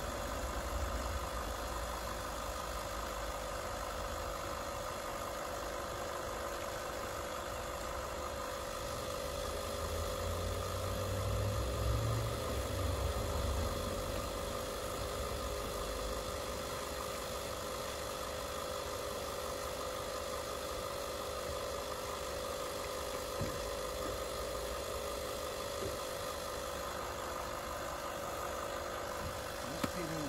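A steady mechanical hum like an engine idling, holding constant pitch throughout, with a low rumble that swells for a few seconds around the middle.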